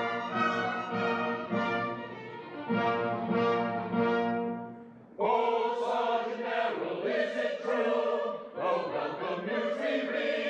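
Orchestra with brass playing opera music that fades out about five seconds in. A chorus then enters suddenly, singing over the accompaniment.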